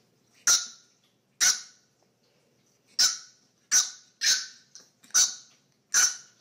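French bulldog puppy yapping at play: a string of about seven short, high-pitched yaps, irregularly spaced, some close together.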